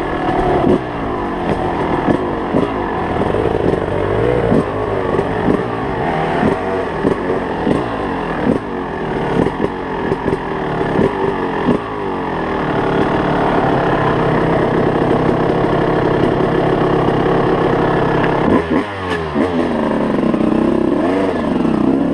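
Enduro dirt bike engine revving up and down while riding, with frequent knocks and clatter over rough ground for the first dozen seconds. It then holds a steadier engine note, and the revs rise and fall again near the end.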